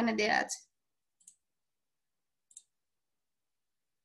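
Two faint computer mouse clicks, about a second and a half apart, with dead silence around them.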